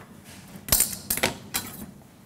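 Kitchenware being shifted on a countertop: a sharp clack about three quarters of a second in, then a couple of lighter clicks, as a skillet and utensils are moved to make room.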